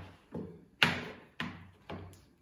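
A few dull knocks, about half a second apart and the loudest about a second in, from a corded orbital sander and its power cord being handled, set down and pulled in across a workbench.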